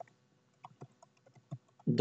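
Computer keyboard typing: a string of faint, irregularly spaced keystrokes.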